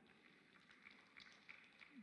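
Near silence: faint room tone in a pause between sentences of a speech.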